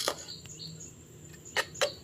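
A metal ladle clinking against the side of an aluminium soup pot while stirring: a sharp click at the start and two more close together near the end.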